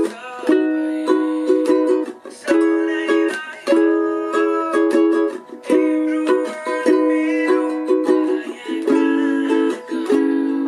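Ukulele strummed in a steady rhythmic pattern, playing a run of chords.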